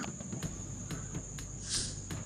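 Crickets chirping steadily in the background as a thin, high, continuous trill with faint regular ticks.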